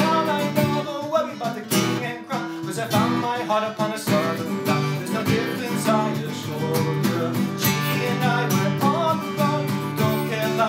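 Steel-string cutaway acoustic guitar strummed in a steady rhythm, playing chords continuously.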